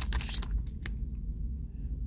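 Foil trading-card pack wrapper crinkling as the cards are slid out of it, mostly in the first half-second, then a few faint ticks over a steady low hum.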